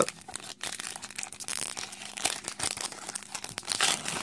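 A foil trading-card booster pack wrapper being torn open and crinkled by hand: a rapid, irregular run of crackles and rustles.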